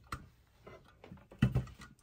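Light clicks and handling noises from a clothes iron and fabric, then a single thump about one and a half seconds in as the iron is set down on the pressing table.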